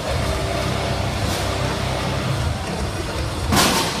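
Robot combat arena din: a steady low rumble of machinery and background sound, then a loud rushing burst near the end as a flame jet fires in the arena.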